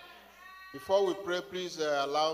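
A voice over the church microphone, drawn out and wavering, coming in about three-quarters of a second in after a brief quiet as the band's music fades.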